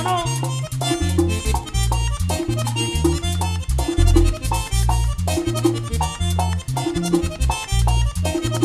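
Merengue típico band playing live: accordion riffs in short stabs over a driving bass line, with güira scraping and tambora drumming keeping a fast, steady beat.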